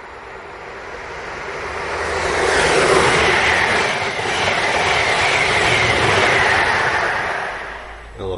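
Passenger train passing at speed close by: the sound builds from a distance, is loudest from about three seconds in, holds for several seconds as the coaches go by, then fades near the end.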